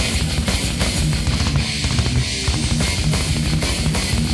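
Death/thrash metal recording: heavily distorted electric guitars over fast, dense drumming, loud and steady throughout.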